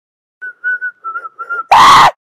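Whistling: a short phrase of five notes at nearly the same pitch, then a loud, brief burst of noise near the end.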